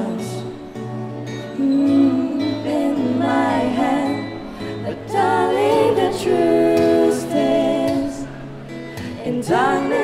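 A female voice singing a slow song, accompanied by acoustic guitar.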